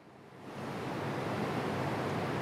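A steady hiss rises out of near silence about half a second in and then holds evenly.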